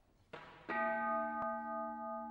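A Japanese temple bowl (rin) touched lightly and then struck firmly under a second in, ringing on with several steady overtones that waver slowly as they beat against each other.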